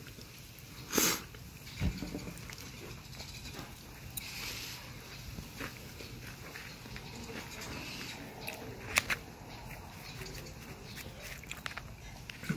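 A person chewing a mouthful of food close to the microphone, quietly, with soft mouth noises, a short breathy burst about a second in and a few faint clicks and knocks.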